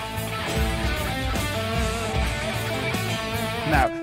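A short section of a rock recording playing on a loop: drums, bass and electric guitar playing a riff, steady throughout.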